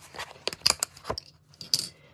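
Sheets of designer paper and cardstock handled in the hands, making a quick series of short, crisp rustles and clicks.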